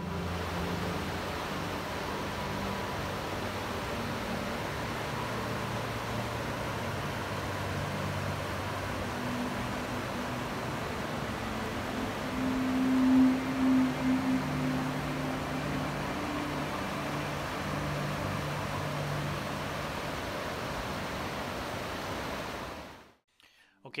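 Steady rush of flowing water, with people's voices murmuring in the background, loudest about halfway through; the sound cuts off suddenly shortly before the end.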